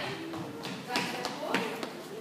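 A few scattered taps and thumps, about four in a second, over voices in the room.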